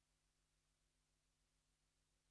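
Near silence: only a very faint steady hum and hiss.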